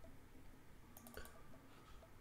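Near silence with a quick run of about four faint, sharp clicks about a second in.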